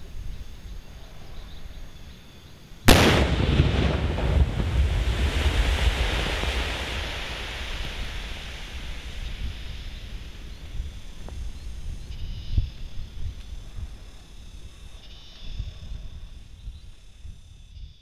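Controlled demolition blast: a TNT charge detonating unexploded cluster bombs buried in a pit. A single sudden boom comes about three seconds in, followed by a long rumble that fades over about ten seconds.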